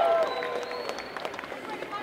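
Held shouts and whoops from a crowd trail off just after the start, leaving low crowd noise with a few sharp clicks.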